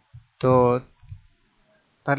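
A person's voice: one short held syllable of about half a second, with a couple of faint clicks around it.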